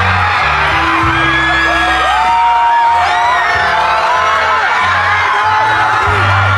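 Music with held bass notes that change every second or so, under a crowd screaming and whooping.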